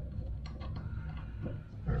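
A few faint, sparse ticks and scrapes as a small allen wrench turns the set screw in a faucet handle, over a steady low hum.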